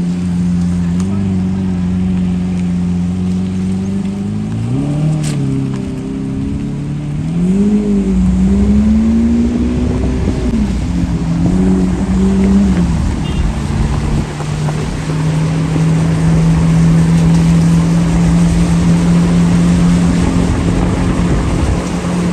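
Lamborghini Aventador's V12 engine idling, its pitch rising and falling in a few short revs in the first half and then settling back to a steady idle, over a steady hiss of rain.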